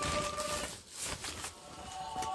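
Rustling and handling noise as clothes and shopping are moved about on a plastic carrier bag, busiest in the first second and quieter after. A faint steady tone sounds under it in the first moment.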